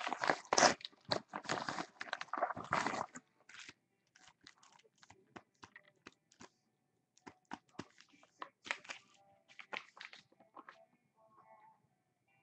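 A padded mailer torn open and crinkled, a dense rustling for about the first three seconds, then sparser crinkles and clicks as the foil-wrapped card packs inside are pulled out and stacked on the table.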